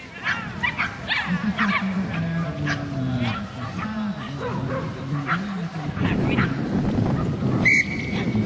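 A dog barking and yipping in short, repeated high-pitched calls, with a sharp click near the end.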